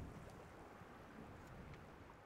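Near silence: a faint, steady hiss of wind and open sea.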